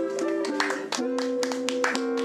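Live jazz: an archtop hollow-body electric guitar holds sustained chords that change in steps, with a few sharp percussive hits on top.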